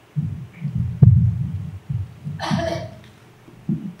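Handheld microphone being handled: a run of irregular low thumps and bumps, with a sharp knock about a second in and a short hiss midway.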